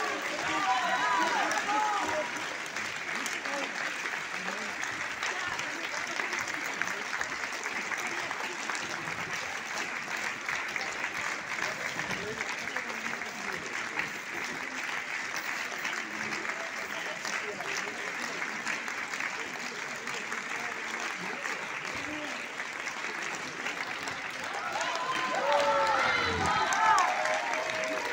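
Theatre audience applauding steadily through an opera curtain call, with voices calling out over the clapping about a second in and again near the end as the applause swells.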